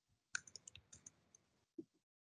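Faint, quick clicks of a computer mouse and keys: a cluster of about seven sharp clicks over half a second, starting about a third of a second in, then a soft low thump near the end.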